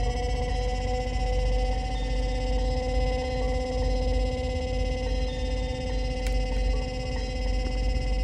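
Sustained synthesizer drone: a chord of steady held tones that has just slid up into place, over a constant low rumble. A faint click comes about six seconds in.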